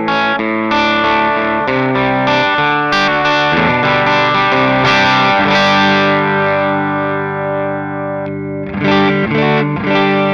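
Electric guitar with amber P90 pickups played clean through a Palmer DREI tube amp running its EL84, 6V6 and 6L6 circuits together: strummed chords that ring on, a long sustained chord in the middle, then a run of quicker notes near the end.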